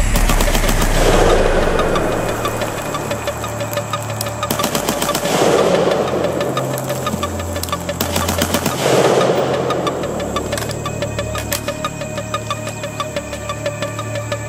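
AR-15 rifle with a 16-inch barrel and A2 birdcage muzzle device firing: a quick string of shots about five seconds in, another near nine seconds, then single shots. Background music with a deep bass line plays under the shots.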